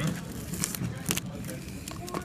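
Background chatter of other people in a room, with a few sharp clicks.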